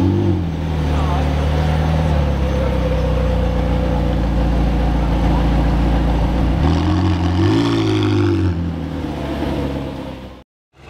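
McLaren 720S's twin-turbo V8 running at low speed with a steady low note, then revving up and back down about seven seconds in as the car drives off.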